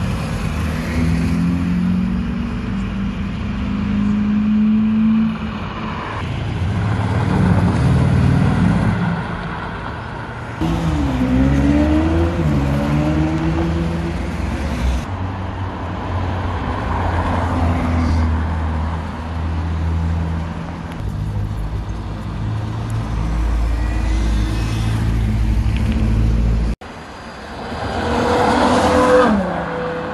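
A string of sports car engines heard in short cuts as the cars drive past on a road, revving and accelerating. There is a dip-and-rise in revs about a third of the way in, and a loud car pulling away near the end.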